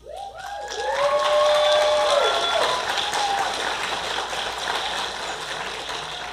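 Auditorium audience applauding, with a few voices whooping and cheering over it in the first couple of seconds. The clapping swells quickly, then slowly tapers off.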